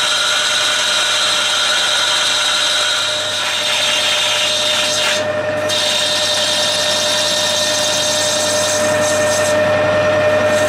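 Metal lathe turning a PB1 phosphor bronze valve spindle, with a steady whine from the lathe's drive and the hiss of the tool cutting. The cutting sound drops out for about half a second around five seconds in, then carries on.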